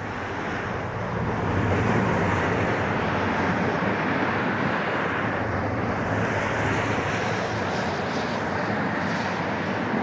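Twin-engine jet airliner on final approach with gear down, its engines giving a steady, even rumble that swells slightly about a second in.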